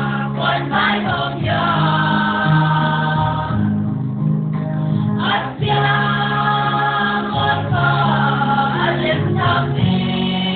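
A church choir singing a gospel song in several voices over sustained low instrumental notes.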